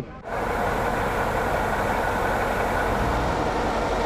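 A truck-mounted crane's engine running steadily at a rescue site. It is a continuous, even mechanical noise with a low rumble underneath and no rhythm or change in pitch.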